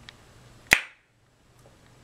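A single short, sharp click about three-quarters of a second in, over faint room tone.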